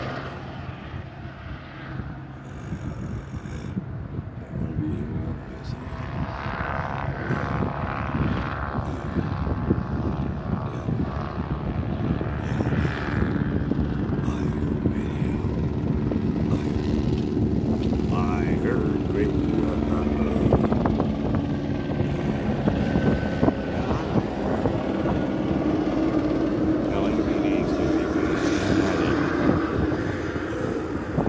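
An aircraft passing overhead, its engine drone growing louder over the first half and then holding steady.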